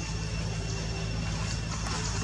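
A steady low mechanical hum, with a faint click at the start.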